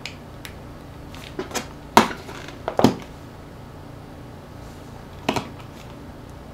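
Sharp plastic clicks and taps from handling and prying at the casing of a small Sony Walkman MP3 player. The loudest comes about two seconds in, a pair follows just under a second later, and a double click comes past five seconds, over a steady low hum.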